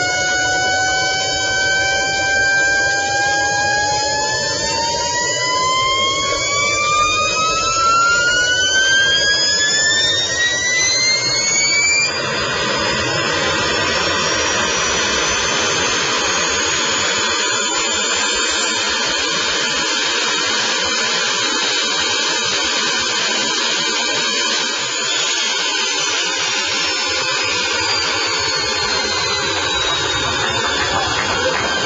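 Homemade gas-turbine jet engine running on a test stand: a loud whine that climbs steadily in pitch for several seconds as it spools up. About twelve seconds in, the whine gives way to a dense rushing noise laced with high whistles, and near the end a high whistle slowly falls in pitch.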